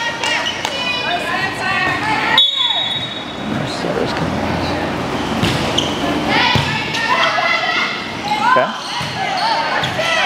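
Volleyball rally in an echoing gym: sharp hits of the ball off players' hands and arms, with voices calling out on and around the court. The hardest hit comes about two and a half seconds in.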